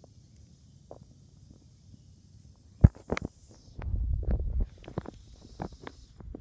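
Handling noise from a handheld camera: scattered small clicks and rustles, a sharp knock about three seconds in, then a low rumble lasting under a second, over a steady high hiss.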